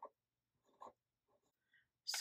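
Near silence with a few faint, brief scratches of a fine-tip pen writing on paper, the clearest about a second in.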